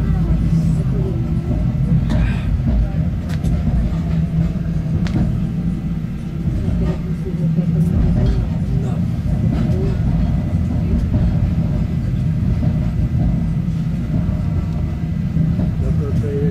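Steady low rumble of a narrow-gauge electric railcar running along the line, heard from inside the car, with occasional clicks and knocks from the running gear.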